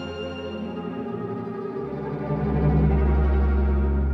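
Cello and string orchestra playing sustained chords in a classical concerto; about halfway through a deep low note comes in and the music grows louder.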